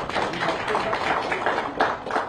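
A room of people laughing, with a dense spatter of claps and taps.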